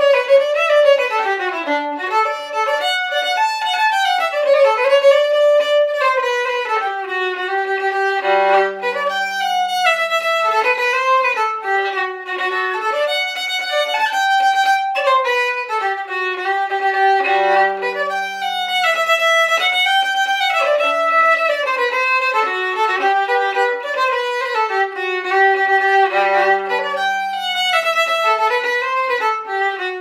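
Solo fiddle playing a Swedish polkett, a bowed dance tune with frequent double stops. A low note is held under the melody three times, at roughly nine-second intervals as the phrases repeat.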